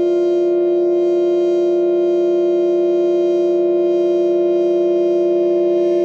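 Modular synthesizer holding a steady drone: a sustained note with a dense stack of overtones that stays unchanged in pitch and loudness.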